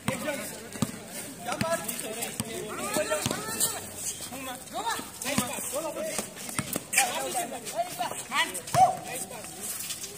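Players' voices calling and shouting across a basketball court during play, mixed with scattered sharp knocks from footfalls and the ball on the concrete. The loudest knock comes near the end.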